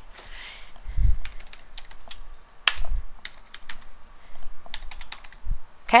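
Typing on a computer keyboard: short bunches of key clicks with pauses between them, and a few dull low thumps among them.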